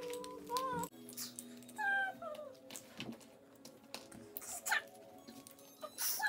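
Small plastic Lego pieces clicking and rattling as they are handled on a table. A few high, wavering whine-like calls come near the start and again about two seconds in, over a steady held tone in the first half.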